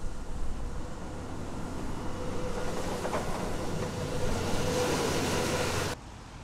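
Outdoor location sound of road traffic: a steady rumble and hiss with a faint steady tone, swelling over the second half as a vehicle passes, then cut off abruptly near the end.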